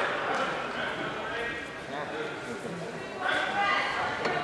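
Indistinct voices talking in a large hall.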